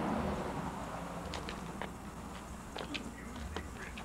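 Quiet ambience with a steady low hum and a few faint, scattered clicks.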